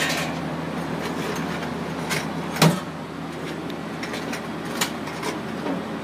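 Guards and covers on a Heidelberg QM-DI press being handled. Several light clicks and one loud knock about halfway through sit over a steady machine hum.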